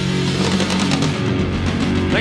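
Heavy metal band playing live: distorted electric guitars and bass sustain a ringing chord, with repeated drum and cymbal hits, as the song closes.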